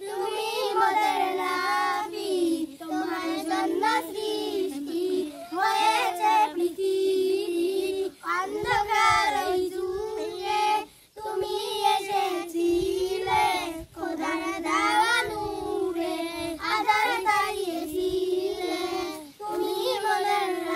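A small group of young children singing a Bengali gojol, an Islamic devotional song, together in unison without accompaniment. The singing comes in phrases with short breaks between them.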